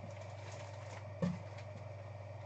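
Steady low room hum with one soft knock a little past a second in, as items and packing are handled inside a cardboard shipping box.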